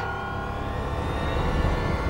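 Dramatic background score swell: a sustained synthesizer chord over a low rumble, slowly building in loudness.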